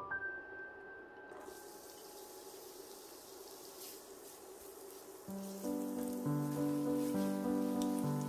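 Diced onion sizzling in hot vegetable oil in a frying pan, stirred with a spatula; the hiss starts about a second and a half in. Background piano music plays throughout and gets louder about five seconds in.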